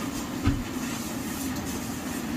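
Steady low machine hum in a small room, with one soft thump about half a second in.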